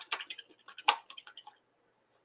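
A quick run of light clicks and taps of small hard objects handled on the table, one louder tap about a second in, stopping about a second and a half in.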